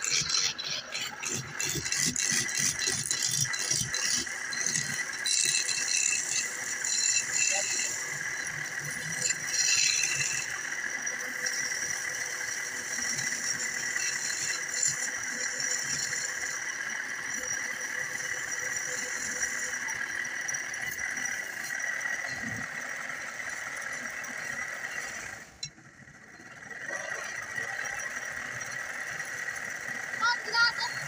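Wood lathe spinning a wooden blank under a hand-held chisel: a rattling, scraping cut over a steady high whine. The rattling is densest in the first third, and the sound dips briefly near the end.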